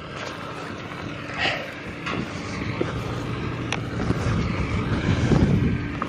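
Farm tractor engine running steadily, a little louder near the end, with a few short knocks from the hand-held camera.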